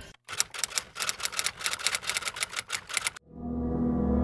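A rapid, even run of sharp mechanical clicks, about six a second, that stops abruptly about three seconds in. A low sustained musical note then comes in and swells.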